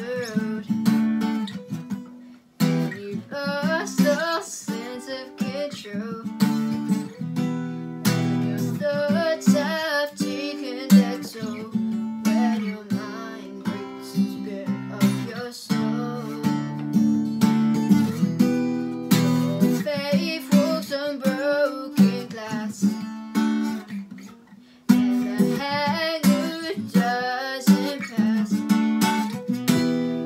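A steel-string acoustic guitar strummed in chords while a woman sings along, with two brief breaks in the strumming, one early and one near the end.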